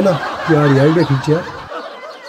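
A man chuckling, a few short laughs in the first second and a half that then trail off.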